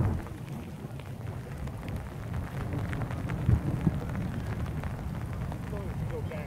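Wind buffeting the phone's microphone: a steady low rumble that gusts strongest about halfway through.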